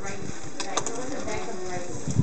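A few quick knocks of a knife striking a cutting board, a little past halfway through, as fish is cut up, with voices talking in the background.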